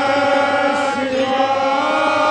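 Devotional Hindu bhajan: a male voice chanting long, held notes over instrumental accompaniment with a steady beat.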